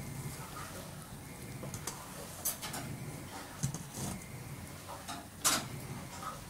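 Grated daikon radish being pressed and packed by hand in a stainless-steel mesh strainer: a few short, irregular squishing and rustling sounds, the loudest about five and a half seconds in.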